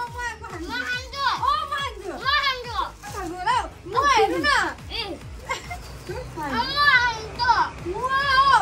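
A boy and a woman talking in play, in short phrases that rise and fall in pitch, with brief gaps between them.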